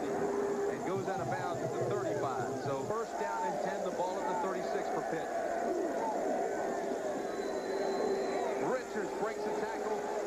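Stadium crowd cheering and shouting, many voices at once, with a long held note sounding through it briefly at the start and again for a few seconds near the end.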